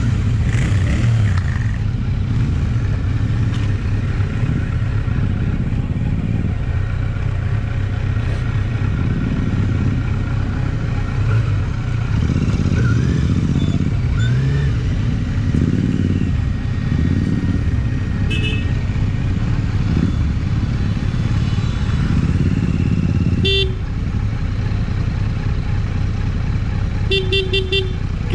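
Kawasaki Z900's inline-four engine running steadily at low speed while the bike is ridden slowly over a dirt lot. A horn sounds one short toot about 23 seconds in, then beeps rapidly several times near the end.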